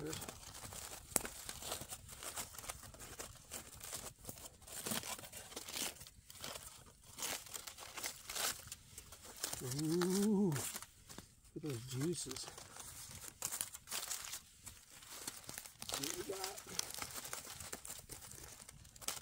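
Aluminium foil crinkling and crackling as a tinfoil packet of campfire-cooked fish is peeled open by hand, in irregular bursts of crackles throughout.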